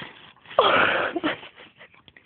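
A person's loud wheezing gasp, about half a second in and lasting under a second, with a short falling squeak in the voice.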